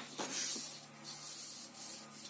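Paper sliding and rubbing over a sheet of paper: two soft swishes as a sheet is moved across the written page.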